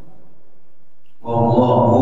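After a short pause, a man begins chanting a Quranic verse in Arabic into a microphone about a second in, in a steady, melodic recitation voice.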